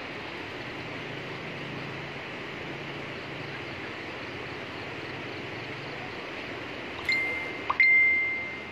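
Steady rushing of muddy floodwater. Near the end a high ringing chime sounds twice, the second louder and longer; it is the loudest thing.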